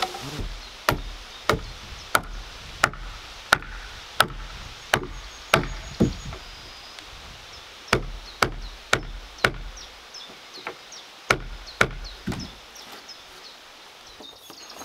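Sharp knocks of blows struck on heavy timber, with a dull thud under each, about one and a half a second in three runs with short pauses between. Birds chirp faintly behind them.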